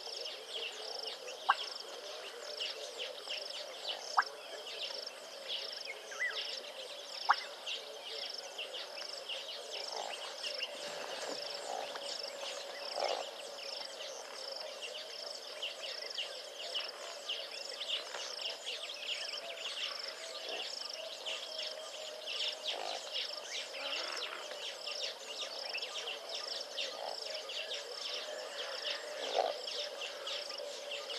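Bush ambience of insects and birds: a dense chirring chorus with a high call pulsing about twice a second, over a steady low drone. A few sharp clicks stand out in the first several seconds.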